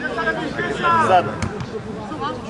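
Voices shouting across a football pitch during play, with a single sharp thud of a football being kicked about one and a half seconds in.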